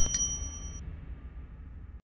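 Subscribe-button sound effect: a click, then a bright bell-like ding that rings out for under a second, over a low rumble fading away.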